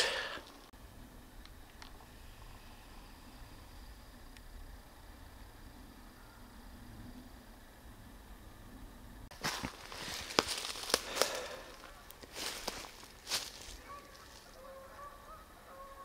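Geese honking faintly near the end, after a cluster of sharp rustles or crunches in the middle.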